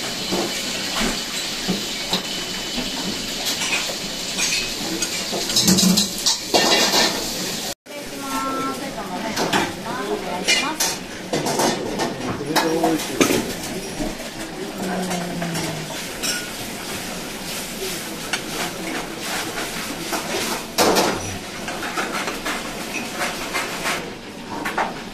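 Ramen shop kitchen din: a steady hiss with dishes and bowls clattering and background voices, cutting out for an instant about eight seconds in.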